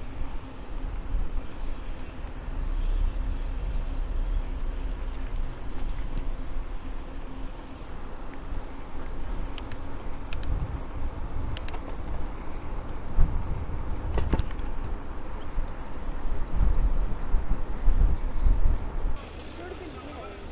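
Wind buffeting a handlebar-mounted camera's microphone while cycling, with tyre and road rumble and a few sharp clicks from the bike over bumps. Near the end it cuts off suddenly to a quieter steady hiss.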